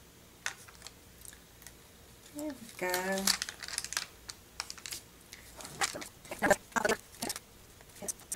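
Light clicks and crinkles of a clear plastic sheet of mini glue dots being handled and picked at with metal tweezers. The clicks are scattered, with a busier, louder run about six to seven seconds in.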